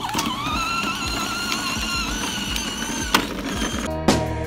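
Battery-powered ride-on toy scooter's electric motor whining as it drives, rising briefly in pitch as it gets going and then steady, with a sharp click about three seconds in.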